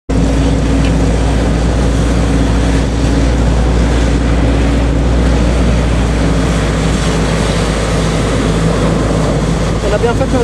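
Steady engine drone of a 1944–45 military vehicle on the move, with wind noise on the microphone; it starts abruptly as the clip begins.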